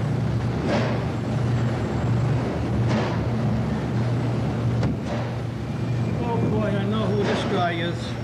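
Steady low machinery hum in a commercial bakery, with a few sharp clatters. Indistinct voices come in near the end.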